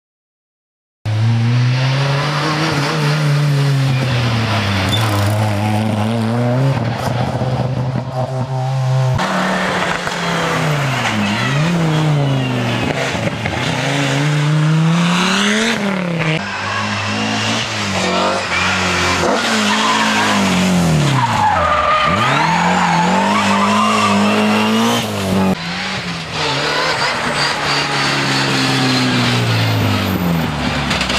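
Rally car engines revving hard, pitch climbing and dropping again and again through gear changes and lifts, with tyres squealing through the corners. It starts abruptly about a second in, and the sound jumps a few times where separate passes are cut together.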